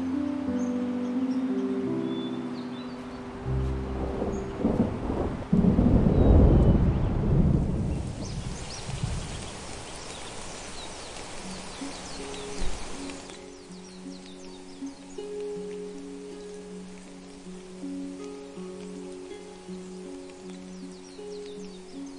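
Soft music of long held notes, with a roll of thunder about five seconds in, the loudest sound here, followed by steady rain that stops about two-thirds of the way through, leaving the music alone.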